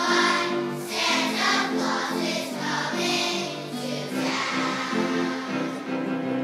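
Choir of second-grade children singing a song together in sustained notes that change every half second or so.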